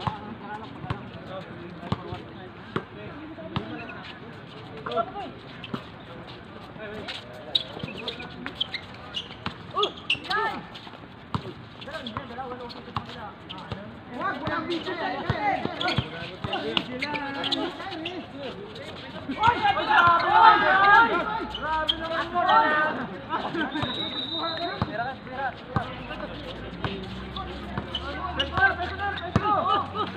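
Basketball bouncing on an outdoor hard court, with many short thuds throughout. Players' voices call and shout over it, loudest from about halfway through for several seconds.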